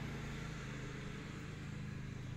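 A steady low hum over faint background noise.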